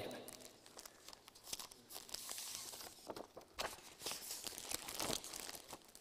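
Sheets of paper rustling faintly as a stack is leafed through by hand, with a few sharper crinkles.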